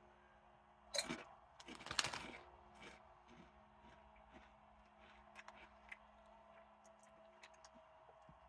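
Ridged potato chip crunched in a bite about a second in, then a cluster of chewing crunches around two seconds, trailing off into a few faint crackles.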